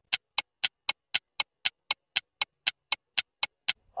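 Ticking clock sound effect used as a quiz countdown timer: sharp, even ticks, about four a second, that stop just before the answer is given.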